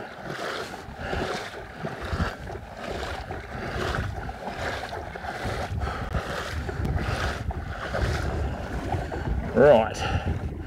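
Legs wading through shin-deep water over a weedy flat: a swish and slosh with each stride, coming in even surges, with wind rumbling on the microphone.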